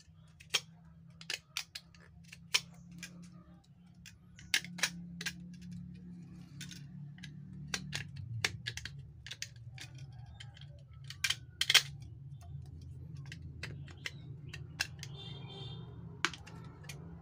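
Irregular sharp clicks and taps of plastic pieces being handled and fitted against the back of a portable radio's plastic case, over a steady low hum.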